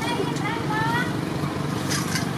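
A steady low motor hum, with voices in the background.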